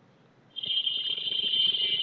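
A high-pitched steady tone begins about half a second in and lasts about a second and a half, followed by a second, shorter tone.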